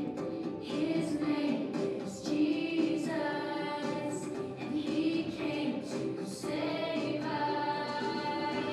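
A Vacation Bible School theme song plays, with voices singing over a backing track, and children singing along.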